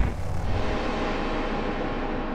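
Intro sound effect under a title card: a deep, steady wash of rumbling noise with a faint ringing tone in it, slowly fading.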